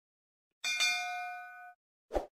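A notification-bell 'ding' sound effect: one bright bell strike about half a second in, ringing with several steady tones that fade and then cut off abruptly about a second later.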